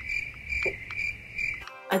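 Cricket chirping, a steady high chirp swelling about twice a second that stops abruptly near the end, like a sound effect laid in during the pause.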